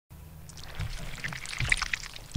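Crackling, rustling noise with two soft low thumps, one a little under a second in and one near the end.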